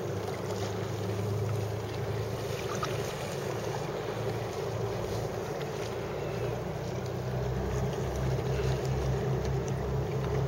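Wind blowing over the microphone on open water, a steady rushing noise with water lapping around the kayak. The low buffeting grows stronger and pulses near the end.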